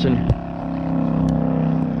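Steady drone of highway traffic, a continuous rumble with a low hum.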